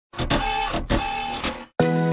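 Intro logo sound effects: a few sharp hits and noisy sweeps with two short steady beeps, then a cut-off. Just before the end, a sustained low chord of background music starts.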